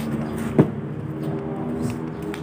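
A motor vehicle engine running steadily, with one sharp thump about half a second in.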